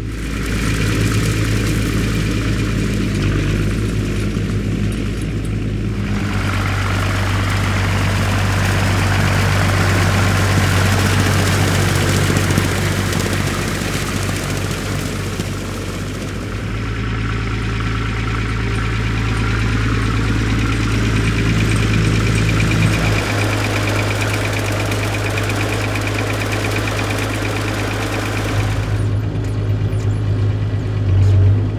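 Massey Ferguson 3085 tractor's diesel engine running steadily while it pulls a SIP Spider rotary tedder through cut grass. The mix of engine and machinery noise changes abruptly a few times, and near the end it is heard from inside the tractor's cab.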